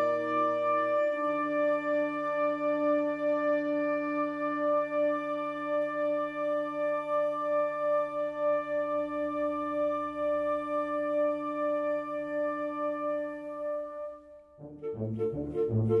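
Concert band holding one long sustained chord, mostly brass, that fades out about fourteen seconds in, closing a movement. About a second later a new, loud rhythmic passage with percussion strokes begins.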